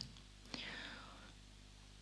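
A faint breath at the microphone about half a second in, fading away within a second, then near-silent room tone.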